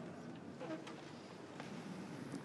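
Faint room tone of a large church, with soft rustling, shuffling and a few small knocks as a group of seated clergy stand up.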